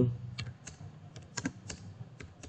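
Computer keyboard being typed on: a run of separate, irregularly spaced keystroke clicks.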